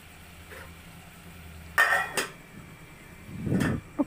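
An aluminium cooking-pot lid clanking as it is handled and set on the pot: a sharp metallic clank with a short ring about two seconds in, a lighter click just after, and a dull bump near the end.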